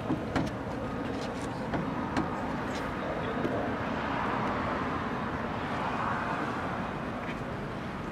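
Steady outdoor traffic noise that swells a little in the middle, with a few light knocks in the first three seconds.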